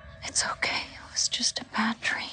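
A person whispering a few short, breathy words.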